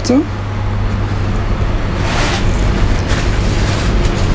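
Steady low hum of a commercial kitchen's extraction ventilation, with two short noises of handling at the counter about two and three seconds in.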